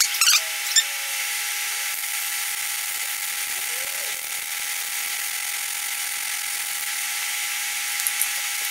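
Forced-air workshop space heater running: a steady whir and hiss with a faint hum, after a few light clicks at the start.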